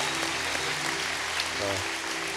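Congregation applauding over soft background music of held notes.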